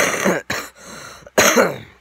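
A boy coughing close to the microphone: three loud, harsh coughs, each falling in pitch, with a quieter breath between the second and third.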